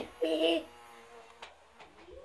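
A child's short vocal sound about a quarter of a second in, then faint room noise with a small click.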